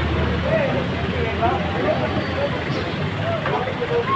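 Street noise with a vehicle engine running at a steady level, over scattered voices of people nearby.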